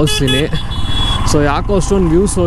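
A vehicle horn beeps twice in quick succession, over the steady low rumble of a motorcycle being ridden.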